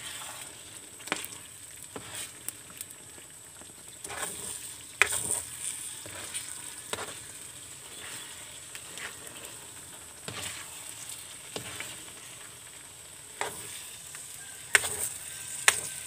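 A thick coconut milk and brown sugar sweet-corn mixture sizzling and bubbling in a metal pan over a wood fire, with a utensil stirring it and scraping and clicking against the pan at irregular intervals.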